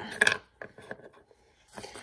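Small plastic toy pieces clicking and tapping as they are handled and set down on a wooden tabletop: a quick cluster of sharp clicks at the start, then a few faint taps.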